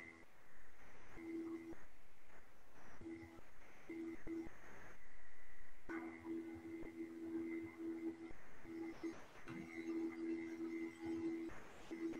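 Faint background music from a video shared over a video call, heard only as two low held notes that keep cutting in and out.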